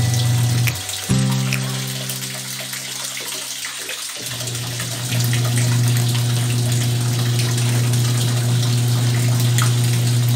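Twin-tub washing machine's wash motor humming as it churns soapy water. The motor cuts out about a second in and starts again about five seconds in, the pause of the wash cycle between spins of the pulsator.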